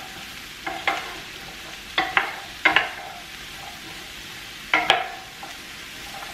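Wooden spoon stirring diced sweet potatoes in a skillet of hot olive oil. A steady frying sizzle runs under sharp knocks of the spoon against the pan, which come mostly in quick pairs every second or two.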